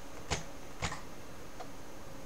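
Two short clicks about half a second apart, then a much fainter one, over a low steady hiss.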